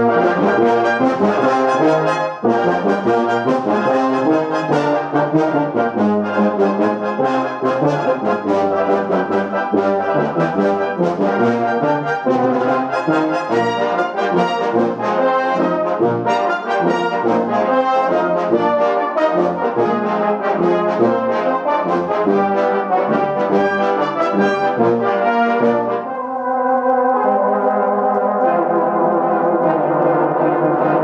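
Youth orchestra playing a loud, busy passage of short repeated chords; near the end it moves into longer held chords.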